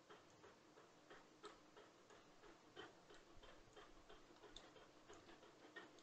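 Faint, irregular clicking of a computer mouse as its buttons are pressed and released over and over, with near-silent room tone.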